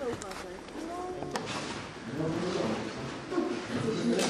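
Indistinct chatter of several people's voices, with a brief sharp click about a second and a half in.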